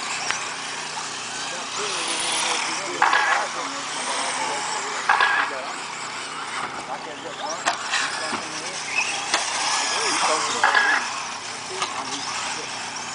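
Electric 1/10-scale 4WD RC cars' motors whining, the pitch rising and falling as they speed up and slow down around the track, with a few sharp knocks.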